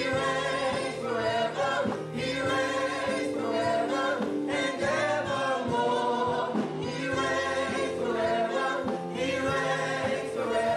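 Gospel worship singing: a small praise team of women and a man singing together into handheld microphones, held notes and gliding lines running on without a break.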